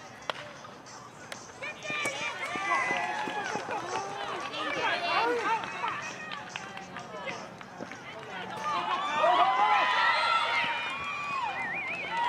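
Spectators at a youth baseball game shouting and cheering, many voices overlapping, swelling twice as a runner comes in to home plate. A single sharp crack right at the start.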